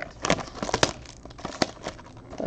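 Wrapper of a trading-card pack crinkling as it is handled, with a quick run of sharp crackles in the first second and one more about one and a half seconds in.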